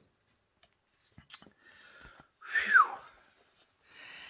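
A light click and a faint rustle as a paper sticker sheet is handled, then a short breathy exhale with a falling whistle-like tone.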